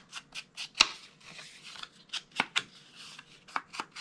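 Foam ink blending tool being brushed and dabbed along the edges of a cardstock card to apply distress ink: a run of short, irregular taps and light scrapes, the sharpest about a second in.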